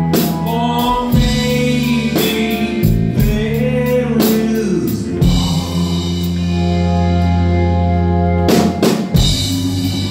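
Live band playing a slow song: a man's lead vocal over electric guitar, bass and drum kit, with a cluster of drum hits near the end.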